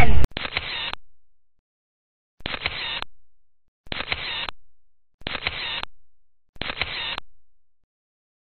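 Photo booth camera shutter sound, heard five times about a second and a half apart: a sharp click with a short fading tail each time, as the booth takes its series of pictures.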